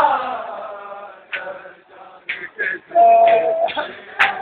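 Men in a crowd chanting a Shia mourning chant (noha) that calls on Sakina. A loud held line fades over the first second, then come broken shorter calls and a single held note about three seconds in.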